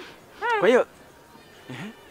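A man's short wordless vocal exclamation about half a second in, its pitch rising and falling, then a brief low murmur near the end.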